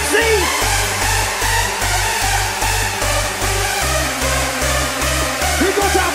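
Hardstyle dance music playing loud over a big sound system, driven by a steady pounding kick drum, with gliding synth or vocal tones near the start and near the end, over the noise of a large crowd.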